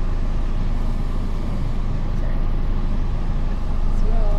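Steady low rumble of a passenger van heard from inside the cabin.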